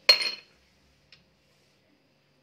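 A small glass ingredient dish clinks once, sharp and bright with a brief ringing, then a faint tick about a second later.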